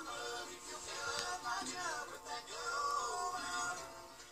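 A boy singing while strumming an acoustic guitar, his voice rising and falling over the chords.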